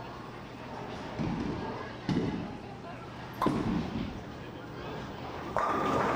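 Bowling alley lanes, with a couple of sharp knocks of balls and pins. About five and a half seconds in, a bowling ball strikes the pins and they crash and scatter.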